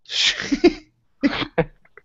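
A man coughing after drawing on a vaporizer: a rough fit of several coughs in the first second, then two more short coughs past the middle.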